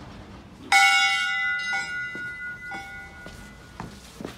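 Temple bell struck hard about a second in, its ringing tones lingering and slowly fading, then struck three more times, more lightly.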